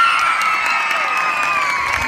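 A crowd cheering and screaming with clapping: many high voices hold long shrieks that slide slowly down in pitch over a spatter of claps. The cheer swells up just before and stays loud throughout.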